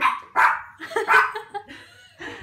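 A dog barking: about four short, sharp barks in quick succession.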